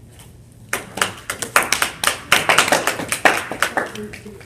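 A small audience clapping, starting about a second in after the speaker's closing thanks. The individual hand-claps can be heard, at an irregular pace.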